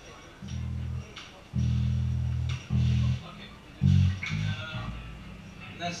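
Electric bass guitar through an amplifier playing four or five separate low notes, each held up to about a second, the first coming about half a second in.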